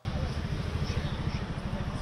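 A steady low rumble with a noisy haze over it, starting abruptly and holding even throughout.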